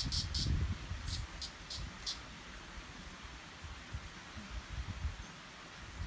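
An insect chirping in short high pulses, about four a second at first, then a few spaced-out chirps that stop about two seconds in, over a steady low rumble.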